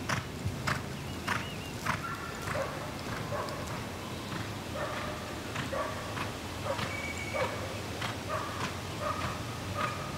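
Hoofbeats of a ridden stock horse gelding loping on arena sand, a regular beat of dull strikes that thins out mid-way and picks up again near the end. Short high piping calls sound over them from about two seconds in.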